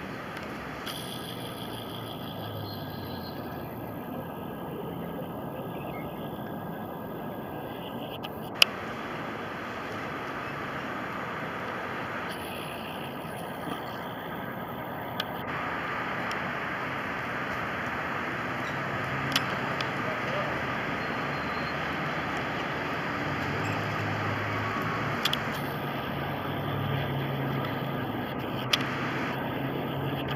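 Steady outdoor background noise with a low rumble, like distant traffic, and a few sharp clicks, the loudest about nine seconds in.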